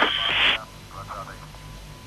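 Tail of a crackly, narrow-band transmission on a launch radio link: a burst of radio hiss that cuts off suddenly about half a second in, then a brief faint voice. A steady hum with a thin whistle-like tone runs underneath.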